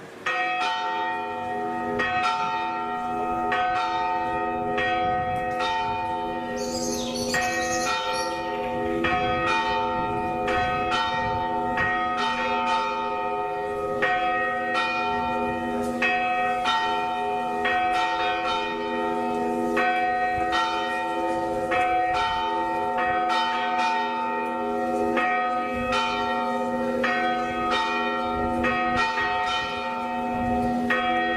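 Tarragona Cathedral's tower bells ringing in a continuous peal, several bells of different pitch struck in steady succession, about three strokes every two seconds. Each stroke rings on over the next.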